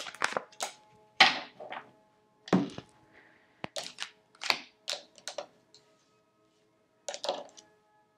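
Tarot cards handled on a hard, glossy tabletop: a run of short snaps, taps and slides as cards are picked up, flicked and laid down, with a last small cluster about seven seconds in.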